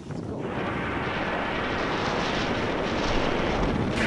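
Steady rushing noise of wind on an action camera's microphone while skiing, mixed with skis sliding over snow, slowly growing a little louder.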